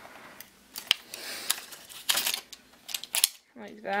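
Small clicks and scrapes of an RC truck's electric motor being pushed up and down in its slotted mount against the gears, with a sharp click about a second in and a few more clicks later.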